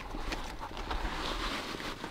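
Pack fabric rustling and a buckle scraping softly as a hip belt is threaded through the sleeve of a nylon pouch, with a few faint scratchy strokes over a low wind rumble on the microphone.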